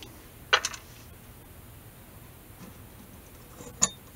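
Two sharp small clicks, one about half a second in and one near the end, with quiet between: a screwdriver and the metal tailpiece hardware clicking as the tailpiece screws are backed out of the end of an archtop guitar.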